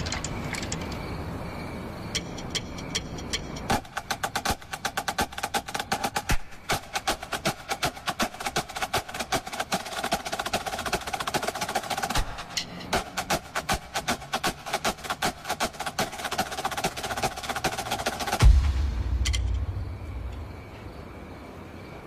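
Marching snare drums played at speed in a drum-off: rapid stick strokes and rolls with a tight, ringing snare tone. They build from scattered strokes into a dense flurry about four seconds in, break off briefly in the middle, and stop near the end on a heavy low thump.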